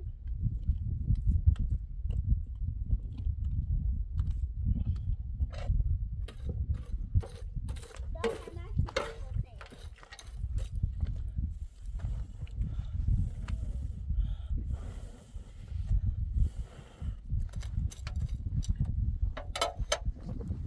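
Low, gusting rumble of wind on the microphone, with scattered soft pats and clicks as flatbread dough is slapped between the hands and a metal spatula scrapes through charcoal in an iron saj griddle.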